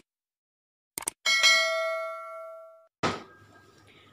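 Two quick clicks about a second in, then a bright bell ding that rings out and fades over about a second and a half: the click-and-bell sound effect of a YouTube subscribe-button overlay. A short knock near the end, then faint room noise.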